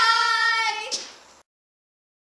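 Children's voices holding one long, high sung note, fading out about a second and a half in.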